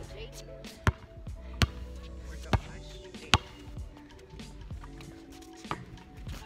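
A basketball bouncing on an outdoor court: four sharp thuds less than a second apart in the first half, then one more near the end, over background music.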